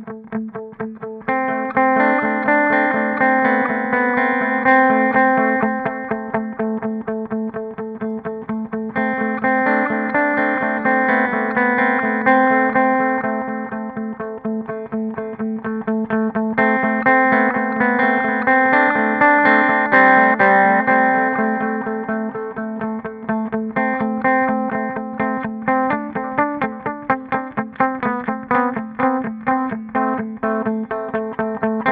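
Electric guitar played through a Hotone Xtomp pedal set to its Analog Eko model, an emulation of a vintage analog delay: a continuous stream of quickly picked notes, swelling and falling in phrases.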